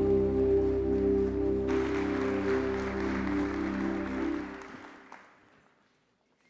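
A worship band's final chord held and fading out, with a congregation applauding from about two seconds in. Both die away toward the end, leaving near silence.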